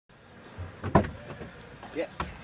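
A single sharp knock inside a car cabin about a second in, over low cabin noise.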